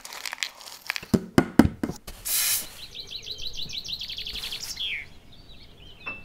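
Craft-work sounds: a few sharp taps and knocks, then a short tearing rasp about two seconds in, followed by a quick run of high squeaks that ends in one falling squeak.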